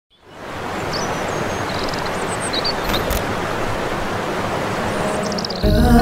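Waterfall rushing steadily, fading in at the start, with a few faint high chirps and a brief click about three seconds in. Music starts near the end.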